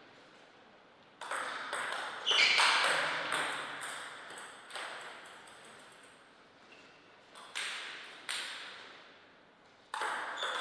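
Table tennis ball clicking off bats and the table, about six sharp pings spaced unevenly a second or more apart. Each ping leaves a short ringing tail from the hall.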